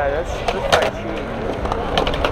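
Skateboard wheels rolling on concrete with a few sharp clacks of boards hitting the surface.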